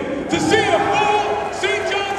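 A man speaking to a crowd through a handheld microphone and loudspeakers, his words not clear.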